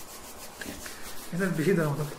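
Hands rubbing together to work in hand sanitizer, a run of quick rubbing strokes; a man's voice comes in past halfway.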